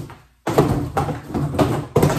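Empty cardboard box being dropped, knocked and kicked on a hard floor: a loud run of hollow cardboard thumps and scuffs, done to scare out any spiders hiding inside.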